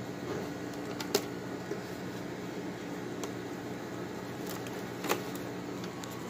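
A few sharp plastic clicks from LEGO bricks and plates being handled, the clearest about a second in and another about five seconds in, over a steady low hum of room noise.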